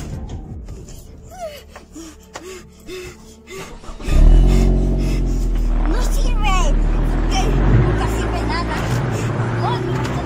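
A pickup truck's engine catches suddenly about four seconds in and then runs steadily with a loud low rumble.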